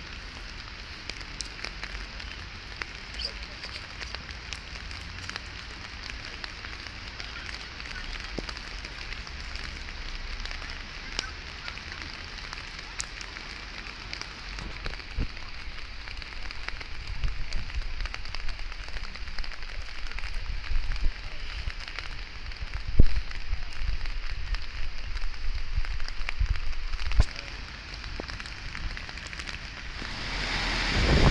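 Steady hiss of rain with scattered crackling raindrop ticks. Wind rumbles on the microphone, gustier and louder in the second half.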